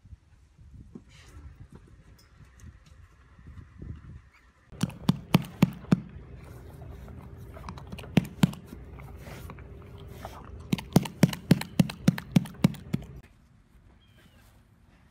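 A horse knocking on wood in runs of sharp knocks: about five in quick succession, two more a couple of seconds later, then a faster run of about eight.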